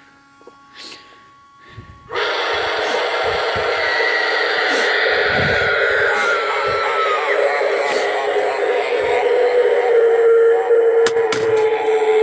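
Spirit Halloween jumping pop-up zombie animatronic playing its sound-effect track through its built-in speaker. The track starts suddenly about two seconds in and runs loudly and steadily, with a gliding tone in the middle and a long held tone later on.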